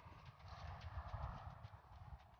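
Faint outdoor noise: wind rumbling on a phone microphone, with soft irregular taps.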